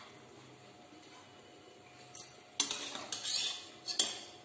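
A perforated steel skimmer scraping and knocking against the inside of a stainless-steel pressure cooker as the cooked potato, peas and tomato are stirred and scooped. After a quiet start there is a click about two seconds in, then a run of scrapes and a sharp knock at the end.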